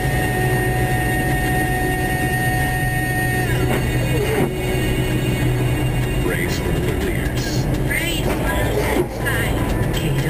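Steady car cabin noise from the engine and tyres on a snow-covered road, under music with a singing voice: a long held note ends about a third of the way in, and wavering sung phrases follow.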